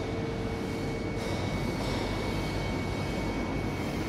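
A steady mechanical drone with a faint, steady high whine running through it.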